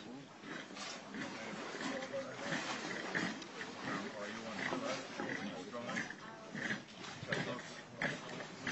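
Indistinct, muffled voices over rough, continuous background noise.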